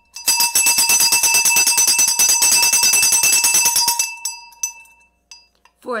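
A jingling bell sound effect: rapid strikes with a few steady ringing tones, loud for about four seconds and then fading away. It serves as a win cue.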